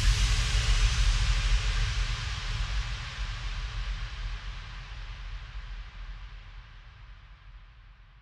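The closing noise tail of an electronic track: an even hiss of white noise over a low rumble, fading out steadily after the last beat, its highest hiss dying away first.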